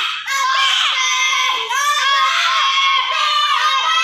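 A group of children shouting and screaming excitedly, several high voices overlapping without a break.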